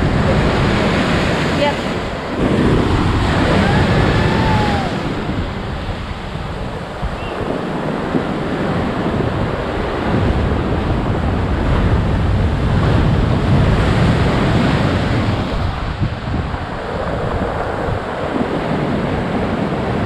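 Heavy ocean surf breaking over rocks and a seawall, a loud steady rush of crashing waves that swells and eases every few seconds, with wind buffeting the microphone.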